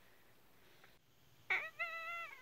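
A woman's short, high-pitched whining 'uhh' of dread, starting about one and a half seconds in after near silence and held at a steady pitch.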